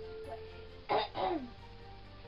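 A person clearing their throat, two short bursts about a second in, over soft background music.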